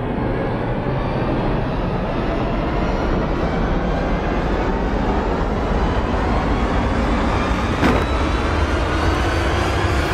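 A loud, steady roaring rumble of dense noise with a deep low end, creeping slightly louder as it goes.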